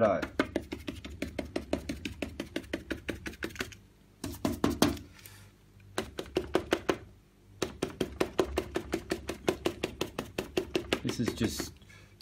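A stiff, scratchy paintbrush stabbing acrylic paint onto a canvas in quick repeated taps, about six a second, pausing briefly near the middle.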